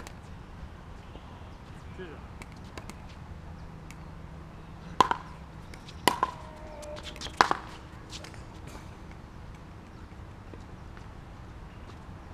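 Three sharp hits of a ball during a court rally, about a second apart near the middle, each with a brief ringing after it.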